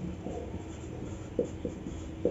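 Marker pen writing on a whiteboard: a few short, separate strokes as a word is written.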